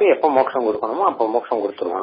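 Speech only: a man talking steadily in a lecture.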